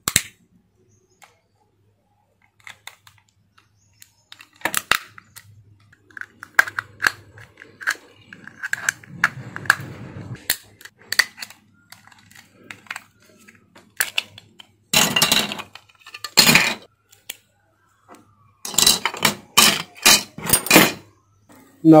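Plastic case of a mobile phone charger being pried open with a thin metal tool. Scattered clicks and scraping come first, then several loud cracks in the second half as the shell splits apart.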